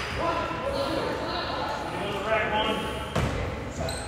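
People talking in a gym, with a basketball bouncing on the hardwood court; one sharp bounce comes about three seconds in.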